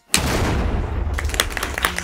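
A sudden loud boom that sets in abruptly and runs on as a low rumble with crackle and scattered clicks.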